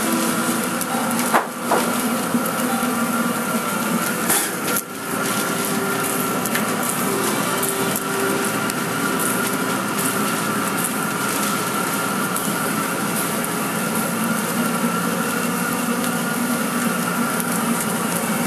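Automatic greenhouse tray seeder running with its conveyor feeding trays through: a steady mechanical clatter over a motor hum, with a few sharper knocks in the first five seconds.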